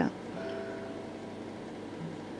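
Pause between speech: quiet room tone with a faint steady hum and a faint held tone in the first part.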